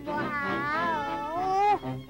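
A cartoon cat's long, drawn-out meow voiced by a performer: one call that wavers in pitch, then rises and is loudest near the end before cutting off abruptly.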